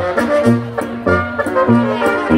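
A small Bavarian folk dance band playing a Boarischer live, with brass over a low brass bass in a steady oom-pah beat.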